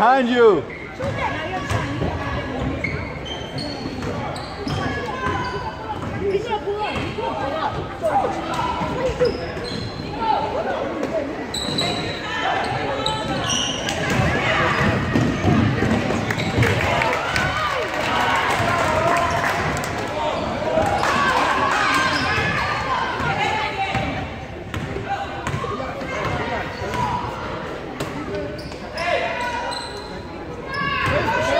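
A basketball being dribbled on a hardwood gym floor during a game, with players and spectators talking and calling out throughout, all echoing in a large gymnasium.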